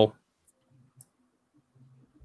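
Two faint computer-mouse clicks about half a second apart, over near silence, just after a man's voice trails off.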